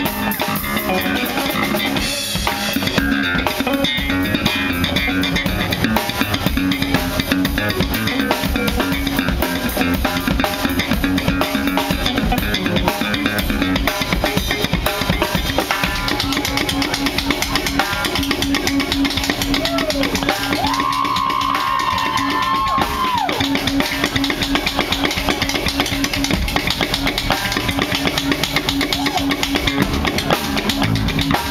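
Live instrumental fusion trio playing: electric bass, drum kit and double-neck electric guitar, with a steady driving drum rhythm. About two-thirds of the way through, a high lead note glides up, holds and slides back down.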